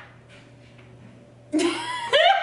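A steady low hum in a quiet room, then about a second and a half in a woman bursts into laughter with a gasp.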